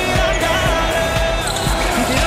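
Background pop music with a steady beat, about two beats a second.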